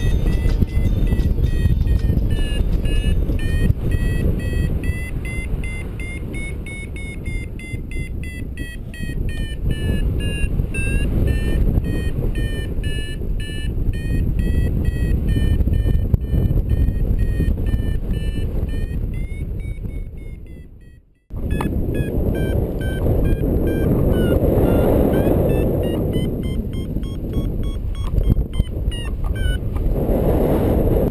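Paragliding variometer beeping steadily, its tone wavering slowly up and down as the glider climbs in lift, over heavy wind noise buffeting the microphone in flight. The sound cuts out for a moment about two-thirds of the way through, then the beeping and wind return.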